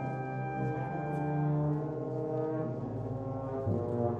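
Concert band playing a slow, sustained passage: the low brass hold full low chords that shift a few times, under higher wind lines.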